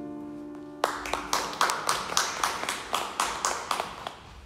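A grand piano's closing chord dies away. Then, about a second in, a few people start clapping in an even rhythm of about four claps a second.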